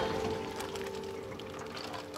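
Water pouring and dripping out of a mesh keep net as it is lifted from the water, loudest at the start and then dying down to a trickle.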